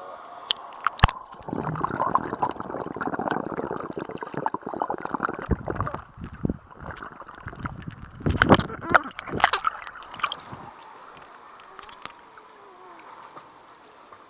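Muffled gurgling and sloshing of pool water as the microphone goes below the surface, with splashes and several sharp knocks, loudest a little past the middle; it turns quieter for the last few seconds.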